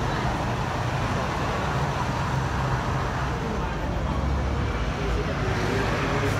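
Car engine running with road and traffic noise, heard from inside the car as it moves off; the low rumble grows stronger from about four seconds in.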